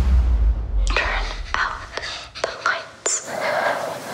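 A low rumble fades out in the first second. Then a hushed, whispering voice is heard, broken by several sharp clicks.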